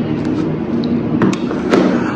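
Handling noise from a handheld phone being moved: steady rubbing and rustling on the microphone with a few light knocks.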